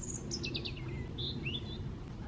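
A small songbird singing: a run of high notes that step down in pitch, followed by a couple of short notes and a brief rising note near the end. A steady low rumble lies underneath.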